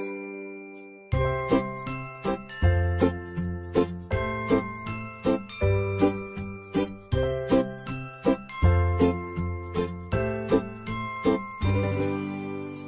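Background music: a chiming, bell-like melody of struck notes that ring and fade, joined about a second in by deep bass notes in a steady pulse.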